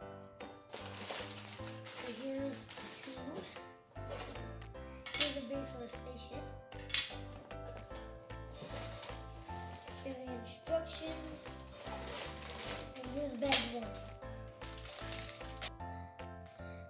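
Crinkly plastic bags of LEGO pieces rustling and rattling as they are pulled out of a cardboard box, in several bursts, over background music.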